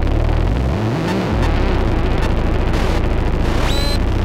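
Experimental electronic music: a dense, noisy drone over deep bass with scattered crackles. About a second in, a low tone swoops up and back down, and near the end a high whine rises.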